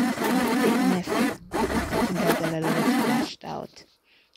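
Handheld immersion blender running in a jug of warm lotion emulsion, blending the oil and water phases as the mixture begins to thicken. It cuts out briefly about a second and a half in, runs again, and stops near the end.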